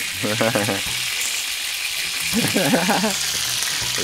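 Steady sizzling of chicken pieces frying in a cast-iron pot, with a man's voice calling out twice over it.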